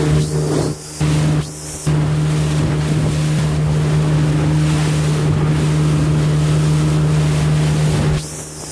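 Outboard motor of a small fiberglass boat running under way with a steady low drone. Wind rushes on the microphone over the sound of water along the hull, dropping out briefly twice in the first two seconds and then holding steady.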